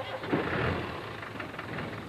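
A vehicle engine idling, fairly faint, under a steady noisy background.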